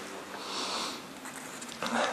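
A man sniffing once, a breath drawn in through the nose close to a desk microphone, about half a second in.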